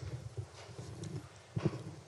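Handheld microphone being handled as it is passed between panelists, giving faint bumps over quiet room tone, with one louder knock near the end.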